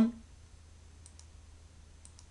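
Two faint computer mouse clicks in quick succession about a second in, over a low steady background hiss.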